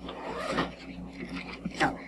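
Paper rustling and sliding as pages are leafed through on a table, loudest in the first half-second, with a faint bit of speech near the end.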